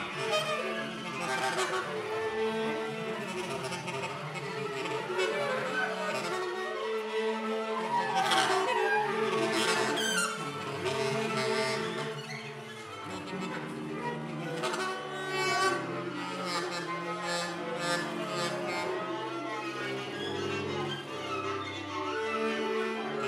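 Live improvised music with bowed string instruments, sliding and shifting pitches over a steady low drone.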